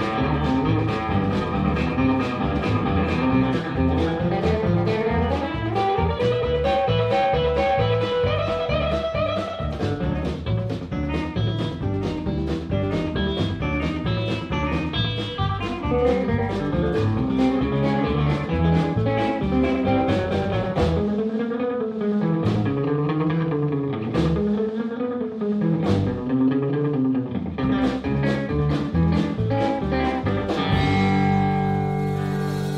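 Live blues band with electric guitar, bass guitar and drums playing a song at a steady beat. About two-thirds of the way in, the bass and drums thin out, leaving guitar notes that bend up and down, before the full band comes back near the end.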